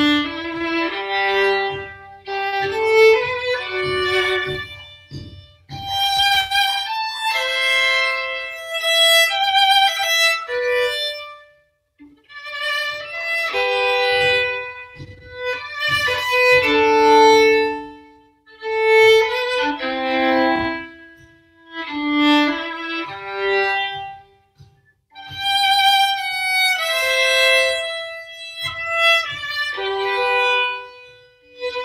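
Solo violin, bowed, playing a lullaby melody of her own composition. It comes in phrases of a few seconds with brief pauses between them.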